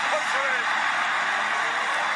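Arena basketball crowd cheering loudly after a home-team basket, a steady roar of many voices.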